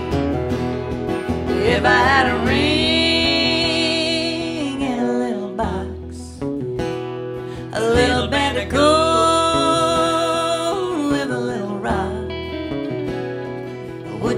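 Live country music: acoustic guitars strumming under an electric slide guitar, with long held, wavering notes that bend in pitch, twice.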